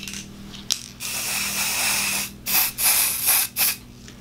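Aerosol can of white temporary hair-colour spray hissing, with a click just before the first spray: one long spray of about a second, then three short bursts in quick succession.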